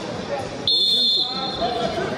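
Referee's whistle: one short, shrill blast about a third of the way in, over voices in an arena hall.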